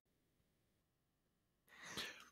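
Near silence, then a short, faint intake of breath near the end.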